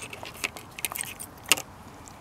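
Siberian husky licking raw egg off a tabletop and mouthing eggshell fragments, heard close up: a run of wet clicks and small crackles, with one sharp click about one and a half seconds in.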